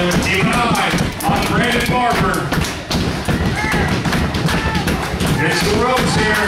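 Voices talking and shouting over scattered thuds and knocks from wrestlers brawling at ringside.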